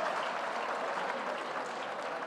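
Audience applauding, a steady crowd clapping that slowly eases off.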